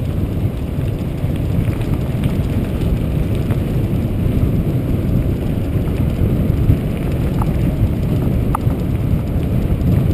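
Steady, loud low rumble of wind buffeting the camera microphone and mountain-bike tyres running over a gravel dirt road. Two brief faint squeaks come in the second half.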